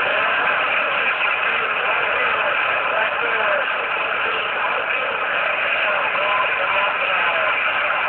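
Galaxy CB radio putting out a steady rush of static hiss, with faint wavering whistles in the noise.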